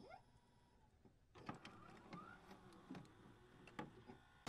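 Near silence, broken by faint scattered clicks and a couple of short rising chirps from a glitch-style transition effect.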